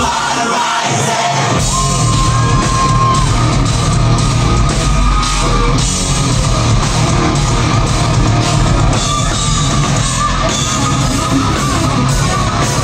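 Heavy metal band playing live and loud, with electric guitars, bass, drums and vocals. The low end drops out for about the first second and a half, then the full band comes back in.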